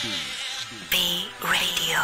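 Electronic dance music in a DJ mix, at a moment of synth effects: a run of falling pitch sweeps, then a sudden buzzy high synth tone about a second in, followed by synth glides that arch up and down.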